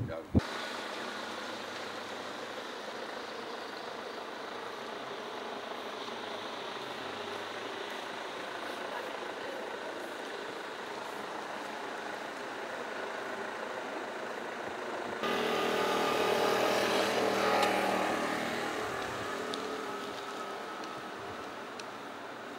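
Road traffic noise on a street, steady for most of the time. About two-thirds in, a louder stretch of traffic noise starts suddenly, swells and then fades over a few seconds as a vehicle passes close by.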